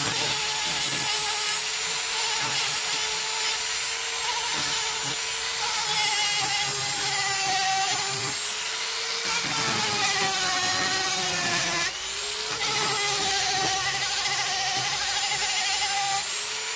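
Flexible-shaft rotary tool with a sanding disc whining steadily as it sands a wood carving, its pitch wavering slightly as the disc is pressed into the wood. The sound briefly drops about twelve seconds in.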